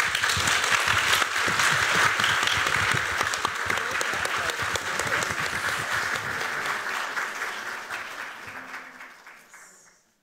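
Audience applauding, starting at once, then thinning out and fading away over the last few seconds.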